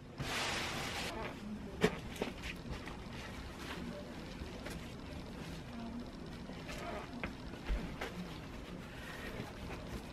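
Faint handling sounds of quilt backing fabric being straightened on a longarm quilting frame: a short rustle of cloth in the first second, then scattered light taps and knocks.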